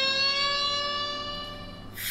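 A single long-held electric guitar note from a rock ballad backing track, its pitch creeping slightly upward as it fades away.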